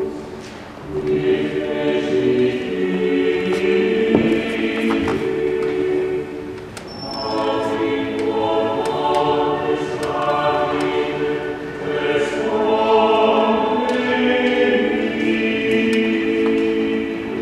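Church choir singing slow sacred music in long, held phrases, with short breaks between phrases: one just after the start, one near the middle and one later on.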